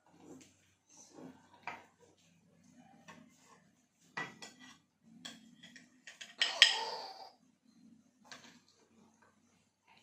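Metal serving spatula scraping and clinking against the baking dish and a ceramic plate as a portion of potato gratin is cut out and slid onto the plate. Scattered light clicks and scrapes, with the loudest, longer scrape about six and a half seconds in.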